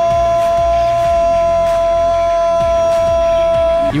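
A football commentator's drawn-out goal call, one long shouted 'Gooool' held at a steady pitch for several seconds. It breaks off abruptly just before the end, leaving the caller out of breath.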